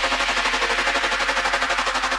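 Wave electronic music track: sustained synth layers chopped into a rapid, even stuttering pulse several times a second.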